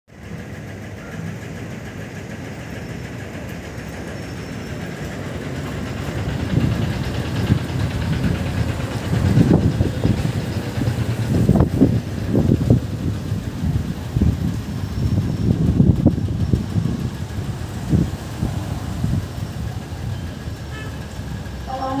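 Low rumble of motor vehicle engines from road traffic, swelling and easing irregularly with several louder surges.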